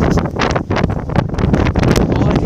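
Wind buffeting a phone's microphone: a loud, uneven rumble with frequent crackles as gusts hit it.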